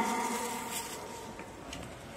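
The final syllable of a recorded female platform announcement over the station PA, its echo fading away in the large hall, leaving faint steady station background.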